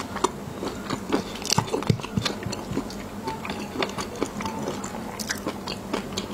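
Close-miked chewing of raw shrimp in a sauce topped with fish roe: wet mouth sounds broken by many small, sharp, irregular clicks and pops.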